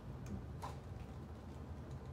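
Dry-erase marker ticking against a whiteboard as points are marked on a graph: two faint ticks in the first second, over a steady low room hum.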